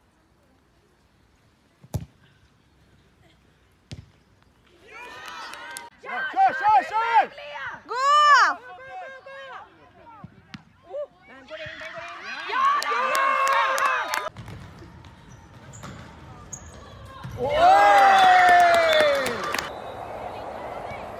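A soccer ball kicked twice, each a single sharp thud about two seconds apart. Then come several loud stretches of shouting and cheering voices without clear words.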